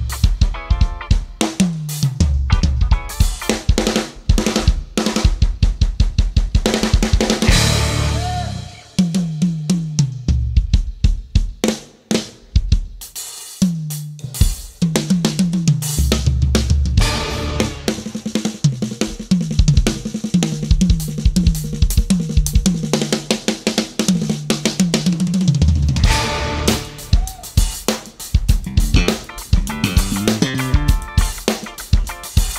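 Acoustic drum kit solo: fast strokes on bass drum, snare, toms and cymbals, dipping briefly in loudness about twelve seconds in before building again.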